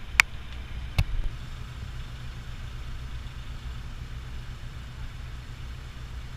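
Steady low engine rumble of a car ferry under way. A sharp click comes just after the start, and a knock about a second in.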